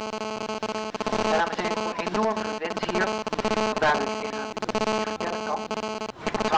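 A steady, buzzing drone held at one pitch, with voices calling over it. It cuts off abruptly at the end.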